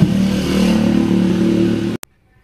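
Isuzu Panther's engine idling steadily, heard from inside the cabin.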